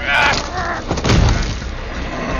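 Movie hand-to-hand fight sound effects: a man's strained yell or grunt, then a heavy, booming thump about a second in.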